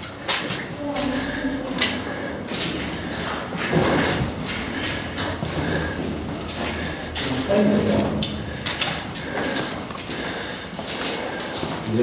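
Footsteps scuffing and crunching on the loose stony floor of a rock-cut tunnel, with irregular scrapes and knocks. There are a couple of brief low voice sounds, about a second in and again near eight seconds.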